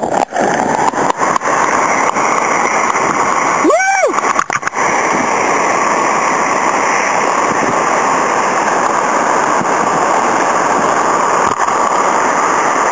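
Water rushing over a river dam, a loud steady roar of falling and churning water, with a few splashes or knocks. About four seconds in, a person gives one short whoop that rises and falls in pitch.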